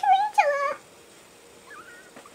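A woman's fearful whimpering, sped up to a high chipmunk-like pitch, a drawn-out whine that falls away in under a second.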